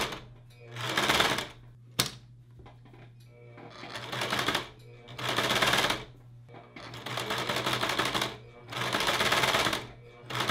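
Domestic electric sewing machine stitching in short runs, starting and stopping about six times, each run lasting roughly a second. A single sharp click comes about two seconds in.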